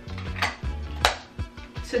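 Background music with a steady beat, and two sharp metallic clicks about half a second apart, the second louder, from a small hinged metal bandage tin being handled and snapped shut.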